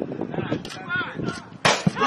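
A football struck hard: one sharp, loud thump about one and a half seconds in, followed by a smaller knock, amid players' voices.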